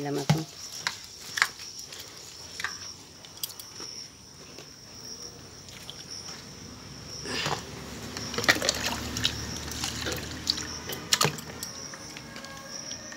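Rice being washed by hand in an aluminium pot: water sloshing and trickling, with light clicks of the pot and grains against the metal, growing louder from about seven seconds in.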